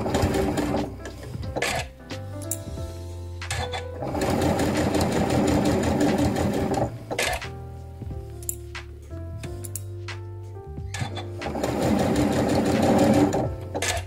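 Domestic electric sewing machine stitching along fabric-covered piping in three runs with pauses between, stopping and starting as it sews across a join, over soft background music.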